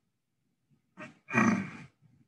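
A man's voice: one short spoken word or vocal sound about a second in, during the narration of an equation.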